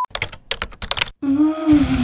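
A rapid run of about a dozen sharp clicks lasting about a second, then a held note that slowly falls in pitch over a noisy wash as the intro music comes in: an edited transition sound effect leading into the title sting.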